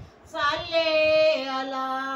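A female voice singing an Urdu naat, a devotional song in praise of the Prophet, holding long drawn-out notes. There is a short break for breath at the start, then a loud sustained note with a gliding fall.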